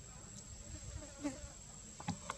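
Steady high-pitched drone of insects in forest ambience, with a single short knock a little past halfway.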